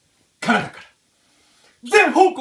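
A man's voice: one short spoken utterance about half a second in, a pause, then his speech starting again near the end.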